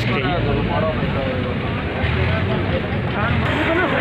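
A steady low engine hum with people talking in the background.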